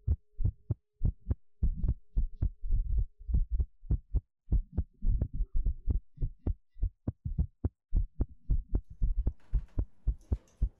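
Heartbeat-style sound effect on the soundtrack: a fast, regular run of low thumps, about three to four a second, with a faint steady hum under the first few seconds.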